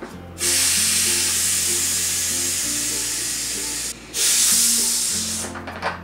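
Pressurized CO2 hissing out of a plastic bottle of wine carbonated with a home carbonator as its cap is slowly loosened. A long hiss of about three and a half seconds, a brief break, then a shorter hiss that tails off.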